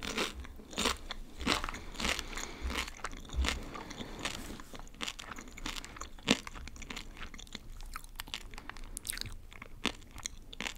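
A person chewing a crunchy snack close to the microphone: irregular crisp crunches, dense at first and thinning out, with one sharper crack about six seconds in.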